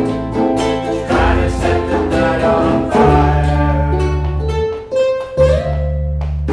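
A small ensemble of strummed ukuleles, with a U-Bass and a djembe, and voices singing along. Bass notes and held single notes come in about halfway, with a brief drop near the end.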